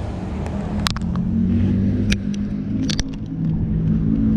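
Car engine running close by in street traffic, a steady low hum, with a few sharp clicks about one, two and three seconds in.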